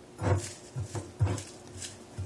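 Several short, low, wordless voice sounds, with paper slips rustling as a hand stirs them in a glass bowl.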